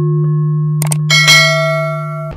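Channel-intro sound effects over a steady electronic drone: a mouse click a little under a second in, then a bright bell chime that rings on and fades, as the subscribe button is pressed and the notification bell lights up.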